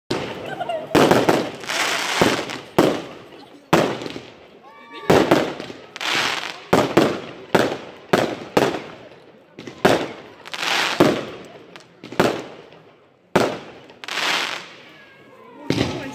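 Fireworks going off: a series of sharp bangs, a little over one a second, each fading out in a short rolling echo.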